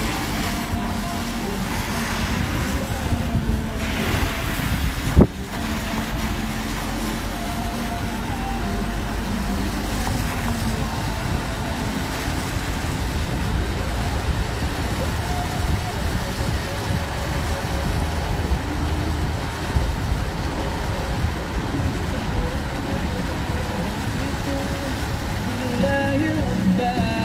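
Steady rumble of a car driving, engine and road noise heard from inside the car, with one sharp knock about five seconds in.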